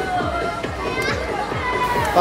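Fast electronic music with a steady kick drum, about three beats a second, and a long tone that slides slowly down in pitch above it.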